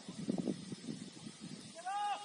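Distant voices calling out across an open field, ending in a short pitched call that rises and then falls.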